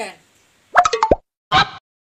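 A comic plop sound effect: a few sharp hits ending in a quick falling 'bloop', then a second short burst about half a second later.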